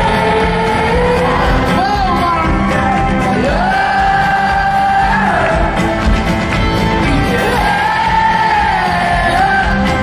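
Folk-rock band playing live, with long held, wavering sung notes over guitar and drums, and the crowd close to the microphone singing and shouting along.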